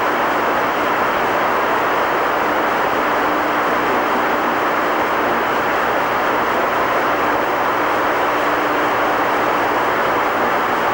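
Steady hiss of an open, narrow-band radio channel between transmissions, with a faint low hum under it.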